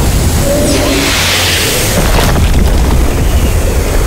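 Cinematic trailer sound design: deep booms and a rushing whoosh that swells about a second in and fades, over heavy background music.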